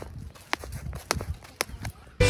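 Sharp taps and scuffs of a hammer thrower's shoes on a wet concrete throwing circle during the turns of a throw, about two a second.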